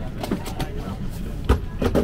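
Steady hum of an airliner cabin during boarding, with a few sharp knocks and bumps, the loudest about one and a half seconds in, as a hard-shell suitcase is carried down the aisle.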